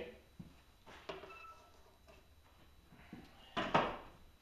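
Plastic glaze-material bucket and its lid being handled: a light knock about a second in, then two loud knocks close together near the end as they are set down.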